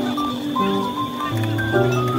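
Background music: a light melody of short held notes that step up and down in pitch.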